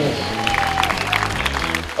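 Audience clapping with music underneath; a single held note sounds in the first second.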